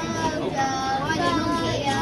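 A young child singing a few held, wordless notes.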